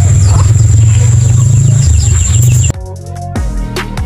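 Wind buffeting the microphone outdoors as a loud low rumble, with a steady high-pitched whine over it; about two-thirds of the way in it cuts off abruptly to background music with plucked guitar and drums.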